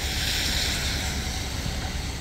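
Steady outdoor street noise: an even rushing hiss over a low rumble, wind on the microphone over city traffic.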